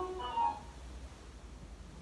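Ice cream van chime playing a few steady musical notes, faint, that end about half a second in; then quiet room tone.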